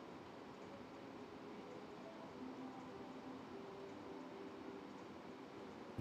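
Faint, steady room tone of a quiet billiards hall, with no ball strikes.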